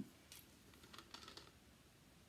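Faint clicks of a plastic screw cap being twisted off a plastic bottle, a few small ticks in the first second and a half, otherwise near silence.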